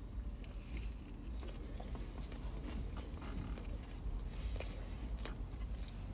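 Faint chewing and small mouth smacks from eating a soft marshmallow-topped cookie, over a low steady rumble inside a car.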